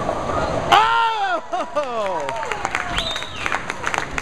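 Bowling pins crashing as the final ball hits, followed by a group of men yelling and cheering at a perfect 300 game, with one long falling yell, then clapping.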